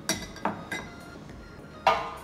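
Glassware knocking and clinking on a wooden counter: three light knocks in the first second, then a sharper, louder knock near the end.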